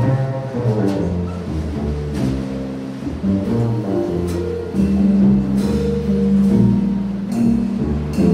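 Live jazz combo playing: archtop guitar, upright bass walking through low notes, and a drum kit with occasional cymbal strokes.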